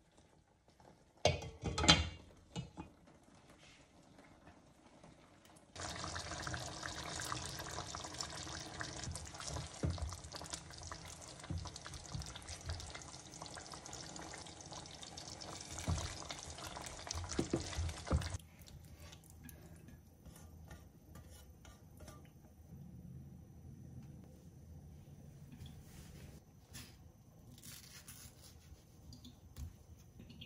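Pot of curry simmering, a steady bubbling hiss that starts and stops abruptly and lasts about twelve seconds, with a few knocks of a spatula against the pot near its end. A couple of sharp clinks come about two seconds in.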